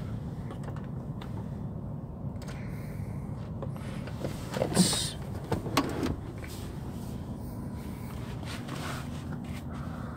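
Steady low hum inside a stationary SUV's cabin, with a few short knocks and rubs about halfway through as hands handle the seat backs and cargo-area trim.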